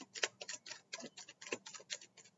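A deck of tarot cards being shuffled by hand: a quick, uneven run of sharp clicks and slaps, about seven a second.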